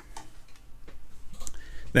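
A few faint, scattered light clicks over a low steady room hum, in a pause between speech.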